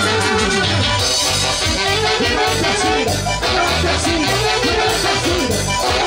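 Live band playing Latin dance music at full volume, a saxophone section carrying the melody over a steady, pulsing bass line.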